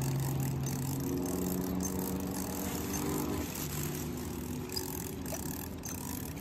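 Motor-vehicle engine hum from traffic, steady in pitch, stepping higher about a second in, then dropping back and fading out about four seconds in, over a steady outdoor hiss.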